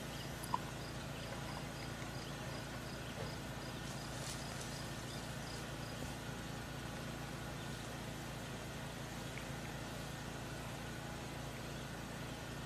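Quiet outdoor ambience over a steady low hum, with a faint insect chirping two or three times a second for the first few seconds. There is a single small click about half a second in.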